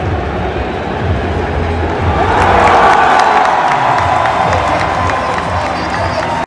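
Large stadium crowd cheering, swelling to its loudest about two to three seconds in.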